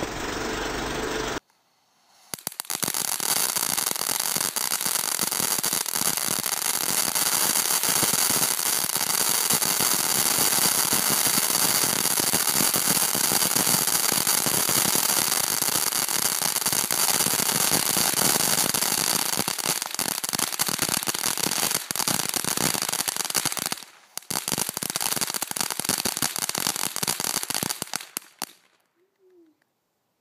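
A fountain firework set in a laptop spraying sparks: a loud, continuous hiss packed with fast crackles. It cuts out for a moment about four-fifths of the way through, picks up again, then dies away shortly before the end.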